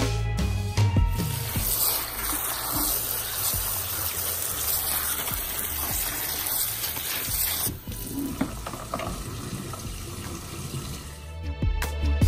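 Kitchen tap running water over a bowl of plastic lip gloss tubes for a final rinse: a steady splashing hiss that weakens about eight seconds in and stops near the end. Background music is heard at the start and end.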